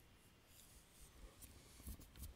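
Faint scratching of a stylus drawing lines on a tablet screen, with a few light taps in the second half, the strongest just before the end.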